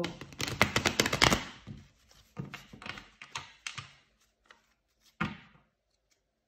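Tarot cards handled on a tabletop: a quick run of crisp card clicks and snaps for about two seconds, then a few separate taps and one louder knock near the end.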